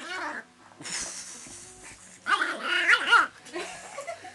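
A Border Terrier puppy and a Miniature Schnauzer play-fighting. About two seconds in comes a loud run of high, yappy barks lasting about a second.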